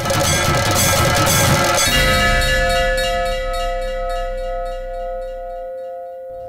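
Background music ending in a single bell-like chime, struck about two seconds in and ringing on with slowly fading overtones.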